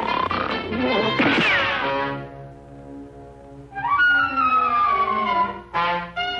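Cartoon orchestral score: a note glides upward, a sharp crash-like hit lands about a second and a half in, then a held chord and a brass note sliding slowly downward.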